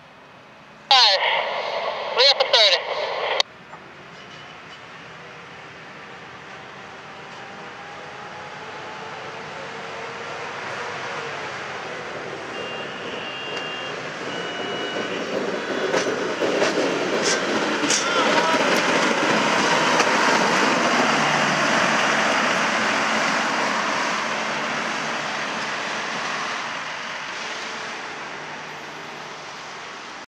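Brandt road-rail (hi-rail) truck sounding its horn about a second in, one longer blast then a few short ones, then its engine and wheels on the rails getting louder as it approaches and passes, loudest about twenty seconds in, and fading as it moves away. A few sharp clicks come as it goes by.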